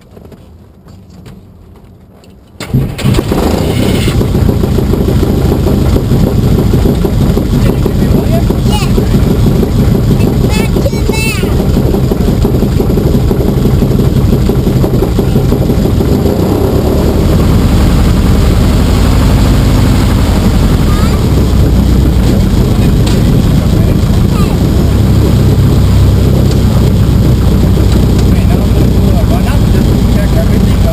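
The 1946 Piper J-3 Cub's flat-four aero engine catches on its electric starter about two and a half seconds in, then runs steadily and loudly, heard from inside the cockpit. Its note grows a little deeper and louder about halfway through.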